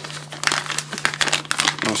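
Plastic packaging bag crinkling as it is handled, a rapid irregular run of crackles.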